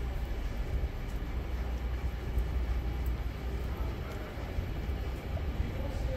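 Steady low rumble of background noise inside a large warehouse hall, with no distinct events.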